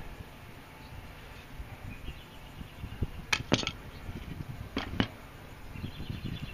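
Handling noise around the axe head on the workbench: a low background rumble broken by two pairs of sharp clicks or taps in the second half.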